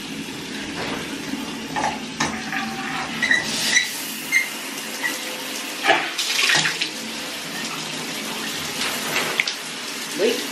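Shower water running in a steady spray, with a few scattered knocks and clatters.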